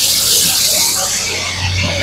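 Water from a wall tap pouring in a stream into a steel pot, a steady hiss that fades away near the end, over a steady low hum.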